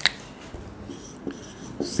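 Marker writing on a whiteboard: a sharp click right at the start, then a few faint, short strokes of the marker tip.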